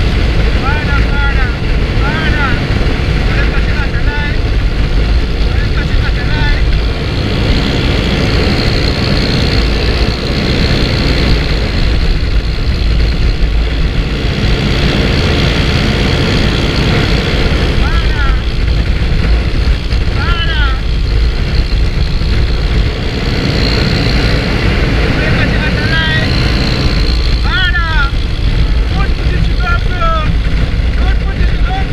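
Motorcycle engine running under way, with steady road and wind rush on the rider's microphone. A few groups of brief high chirps come and go.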